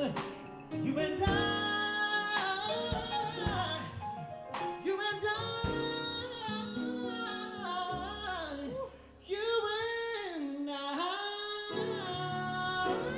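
Live band music: a man singing lead over congas, keyboard, electric guitar and drums, with sharp percussion hits. The sound dips briefly about three-quarters of the way through.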